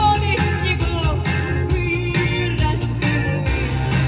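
A woman singing into a microphone over a pop backing track with a steady bass line, amplified through a PA speaker.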